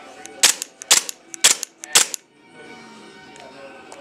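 Gas-powered Glock-style airsoft pistol fired four times in quick succession, sharp pops about half a second apart.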